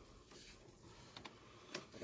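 Near silence: low room tone with a few faint, scattered ticks.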